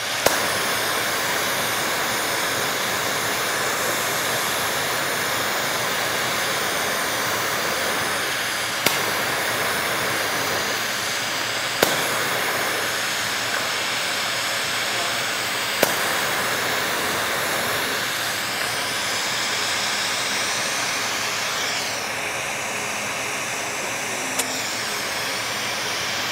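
Glassblowing bench torch flame hissing steadily while borosilicate tubing is heated in it, with a few sharp clicks. Near the end the hiss dips slightly and changes tone.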